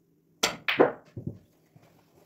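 A snooker shot: a sharp click of the cue tip on the cue ball about half a second in, a louder clack of ball on ball a moment later, then two softer knocks of the balls.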